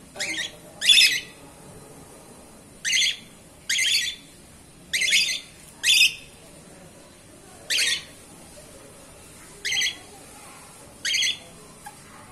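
Caged cockatiels giving short, high, harsh squawks, about nine of them, singly and in pairs a second or two apart.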